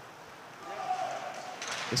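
Faint ice-arena ambience: a steady low hiss of the rink. A faint distant voice calls out, held briefly from about half a second in.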